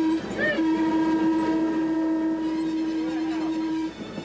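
Electric trolley car running along the track with a steady whining tone. The tone breaks off briefly just after the start and cuts off near the end.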